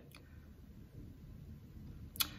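Near silence: faint room tone of a small room, with one faint click just after the start.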